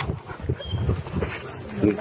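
A leashed German Shepherd making short low sounds, with footsteps on pavement.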